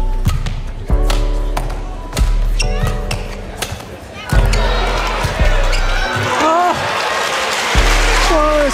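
Badminton rally over a chill pop trap backing track: a string of sharp racket hits on the shuttlecock cut through the steady beat. From about four seconds in, crowd noise swells, with a few short squeaks near the end.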